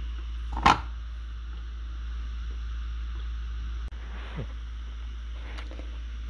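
A steady low hum with one sharp knock a little under a second in, then only faint scattered handling sounds.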